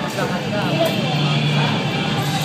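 Girls giggling in short, rising and falling squeals in the first second, over the steady hum and chatter of a busy food court.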